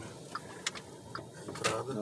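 Inside a slowly moving car: a steady low road and engine hum with a few faint, short clicks, and a voice starting near the end.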